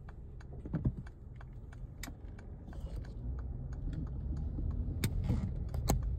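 Car interior: a low engine and road rumble with a steady run of light ticks, about four a second, and a few louder knocks about one, two, five and six seconds in.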